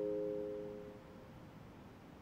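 The last held chord of piano music dying away, fading out about a second in and leaving only a faint steady hiss.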